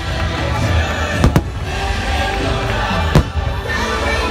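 Aerial fireworks bursting: two sharp bangs close together about a second in and a third about three seconds in. Continuous show music plays underneath.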